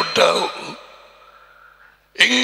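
A man's voice through a close headset microphone, breaking off about half a second in into a long, breathy exhale like a sigh that fades away.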